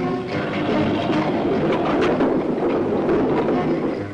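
Army truck engine running as the truck moves along, a steady mechanical noise under background music.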